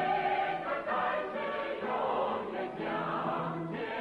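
Soundtrack music: a choir singing long held notes, the sound muffled with no treble.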